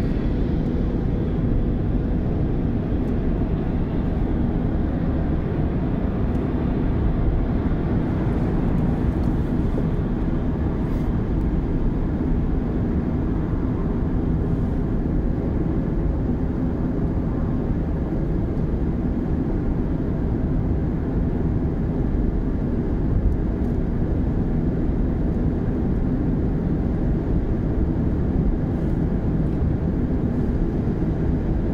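Steady road and tyre noise with engine hum inside a car cabin as the car cruises along a multi-lane road.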